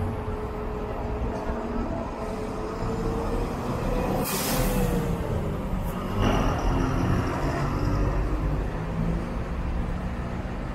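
Diesel city bus pulling away and driving past, its engine running with a rising and falling pitch. About four seconds in there is a short hiss of compressed air from its air brakes, and a sharp knock follows about two seconds later.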